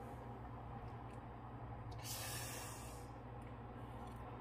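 A faint, steady low hum, with a soft hiss about two seconds in that lasts about a second.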